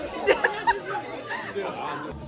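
Only speech: several people chatting over one another at a table.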